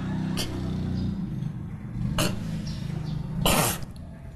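A woman's sudden cough-like burst, a sputter of laughter or choking, about three and a half seconds in, over a low hum in the first half.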